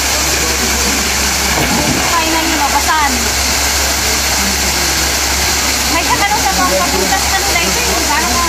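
Steady rushing of a waterfall pouring into a pool, with people's voices briefly heard over it about two to three seconds in and again around six seconds.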